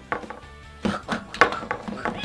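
A toy action figure stomping hard onto another figure on a table: about five sharp knocks in two seconds, over background music.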